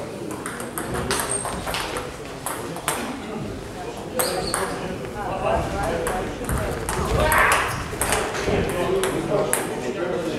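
Table tennis ball being hit by bats and bouncing on the table during a doubles rally: a string of sharp, irregularly spaced clicks, with people talking in the background partway through.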